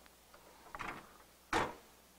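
Hotronix Fusion heat press being locked down: a few light clicks, then a single sharp clunk about a second and a half in.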